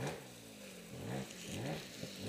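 Trials motorcycle engine still running as the bike goes down in a crash. A sharp knock comes at the start, then the revs sag and rise again in short swells about every half second while the bike lies on its side.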